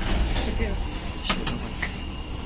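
KMZ elevator cab doors opening at a landing: the door operator motor runs with a thin steady whine over the car's low rumble, with two sharp clicks a little after halfway.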